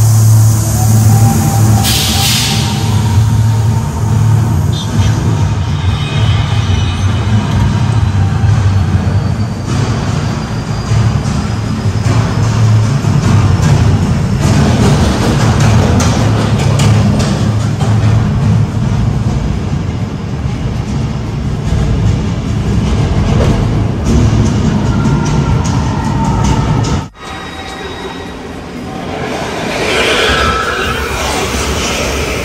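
Loud theme-park ride soundtrack over the tram's speakers: dramatic music with a deep low rumble throughout. It drops off suddenly near the end.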